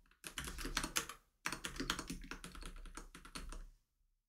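Typing on a computer keyboard: rapid runs of keystrokes with a brief pause just over a second in, stopping shortly before the end.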